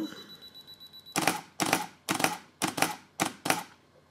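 Canon EOS 5D Mark II DSLR firing a five-shot HDR bracket from Magic Lantern: a high, rapid self-timer beeping stops about a second in, then the mirror and shutter clack through a quick run of exposures over the next two and a half seconds.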